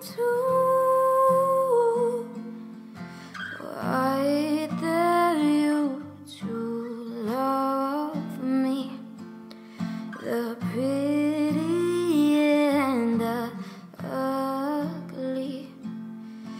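A woman singing in long held, gliding phrases over a strummed acoustic guitar.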